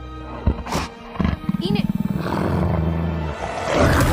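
A werewolf creature's growl, rough and fast-pulsing, swelling into a louder roar near the end, over background music with deep held bass notes. A few sharp knocks come in the first second.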